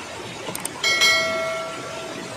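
Two quick clicks and then a bright bell chime that rings and fades over about a second, the sound effect of a subscribe-button overlay, over the steady rush of a river.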